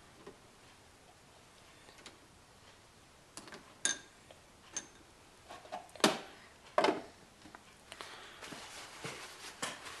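Sparse clicks and knocks as a metal basket of carburetor parts is set into a stainless ultrasonic cleaner tank and its plastic lid is put on. The strongest knocks come about two-thirds of the way through, with faint rapid ticking near the end. The cleaner is not yet running.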